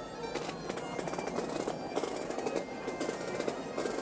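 Street parade: a dense, irregular rattle of sharp hits over a haze of crowd noise, with faint bagpipe notes still sounding in places.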